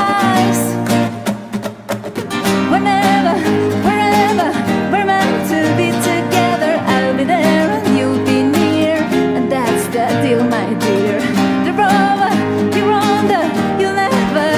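A woman singing over a strummed classical guitar. The music drops off briefly about a second in, then the singing and strumming carry on.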